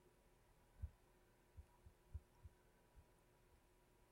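Near silence: room tone with a few faint, short low thumps in the first half.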